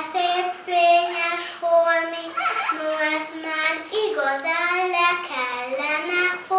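A young girl singing a children's verse in a sing-song voice, holding long, steady notes.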